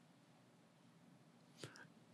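Near silence: faint room tone through the microphone, with two faint short clicks near the end.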